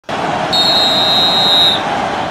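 Referee's whistle: one long, steady, high-pitched blast of about a second, starting about half a second in, over a steady rush of background noise.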